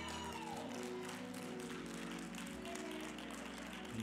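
Church organ holding sustained chords that change a few times, played quietly under a pause in the preaching.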